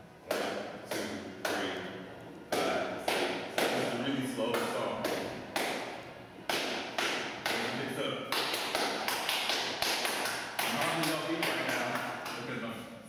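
Dance shoes tapping and stepping on a hardwood floor as salsa steps are demonstrated, about two steps a second at first and quicker in the last few seconds.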